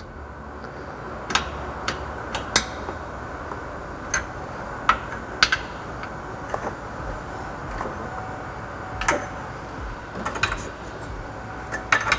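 Irregular sharp metallic clicks and ticks, about a dozen spread unevenly, from an Allen key working the socket head cap screws on the splitter-support clevis brackets during tightening. A steady low background hum runs underneath.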